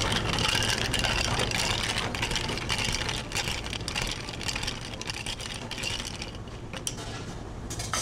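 Ice cubes rattling and clinking against a tall glass as a long spoon stirs an iced drink, dying away about six seconds in, with a couple of single clinks near the end.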